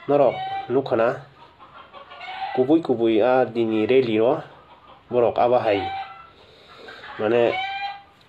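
A man talking in short phrases with pauses between them.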